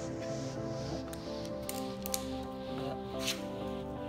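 Background music playing throughout, with a few short sharp snips of scissors cutting fishing line about a second in, near the middle, and a little after three seconds in.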